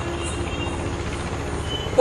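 Steady background hum and hiss with a faint steady tone, no speech.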